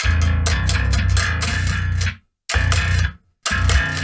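Electric bass riff played on the low string drop-tuned from B to A, with a good grunt. A run of quick, hard-attacked notes lasts about two seconds, then two shorter phrases follow after brief stops.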